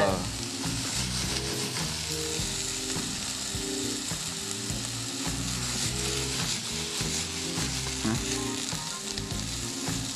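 Sliced carrots, broccoli and small potatoes sizzling steadily in a hot frying pan, turned over with tongs.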